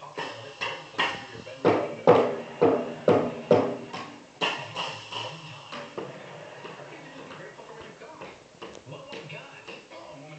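Child's toy drum kit struck with drumsticks: an uneven run of about a dozen quick hits, loudest between about one and a half and three and a half seconds in, then a few scattered, fainter hits.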